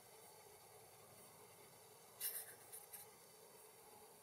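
Near silence with a faint steady hiss, broken a little past two seconds in by a brief scratchy rustle lasting under a second.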